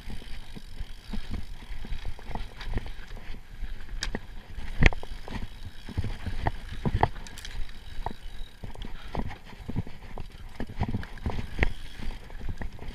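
Giant Trance Advanced full-suspension mountain bike descending rough dirt singletrack at speed: irregular clattering knocks and clicks from the chain, suspension and frame as the wheels hit roots and bumps, over a steady low rumble of the tyres on the dirt. The sharpest knock comes about five seconds in.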